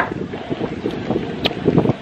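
Wind buffeting a handheld camera's microphone, an uneven low rumble, with two brief clicks, one at the start and one about one and a half seconds in.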